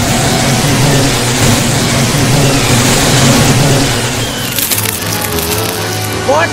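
Soundtrack of a locust swarm: a loud, dense rushing whir of wings over a low droning music bed. About four and a half seconds in the rush thins into a brief crackle of clicks, leaving a steady low hum.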